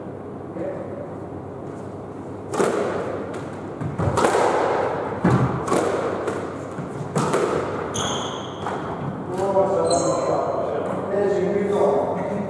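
Squash ball being struck by rackets and hitting the court walls, about half a dozen sharp hits with a ringing echo in the hall. A couple of short high squeaks from shoes on the court floor follow.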